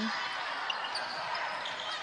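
Basketball being dribbled on a hardwood court over a steady murmur of arena crowd noise.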